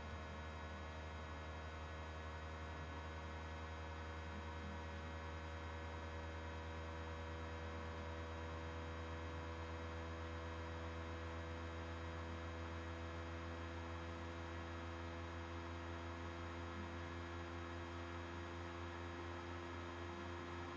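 Steady, faint electrical mains hum with a stack of fixed overtones, unchanging throughout.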